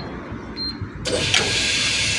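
Fuel dispenser keypad beeping, a short high beep as each key is pressed to set the amount. About a second in, a loud steady hiss starts with a click, as the display resets for fuelling.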